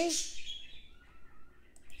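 A short spoken syllable ends right at the start, then quiet room tone with faint, thin bird chirps in the background about a second in.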